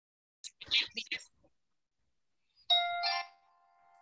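A short two-note electronic chime, like a doorbell ding-dong, about three seconds in, its tones ringing on briefly and fading. A few quiet spoken words come just before it.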